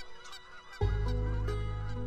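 Faint calls of a flock of birds, then soft orchestral score entering about a second in, with a deep sustained bass note under held higher notes.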